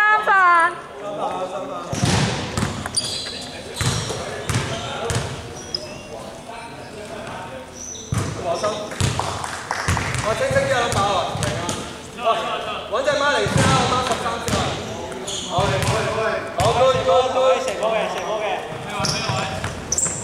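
Indistinct voices of players and onlookers in an indoor sports hall, with a basketball bouncing now and then on the hardwood court.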